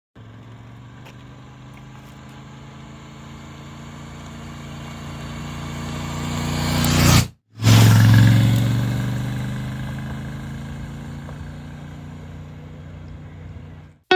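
Royal Enfield Interceptor 650's 648 cc parallel-twin engine on a motorcycle riding past: it grows steadily louder as the bike approaches, peaks as it passes about seven to eight seconds in, then fades as it rides away. The sound cuts out for a split second just at the pass.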